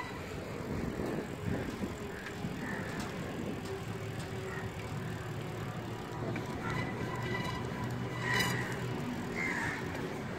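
Bicycle riding on asphalt: a steady rumble of tyres and moving air, with one sharp click about eight seconds in.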